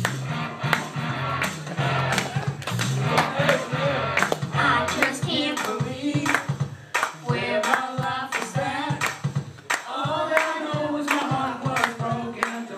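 Upbeat recorded backing track with a steady drum beat, played over a PA, with a man singing along into a handheld microphone from about three seconds in.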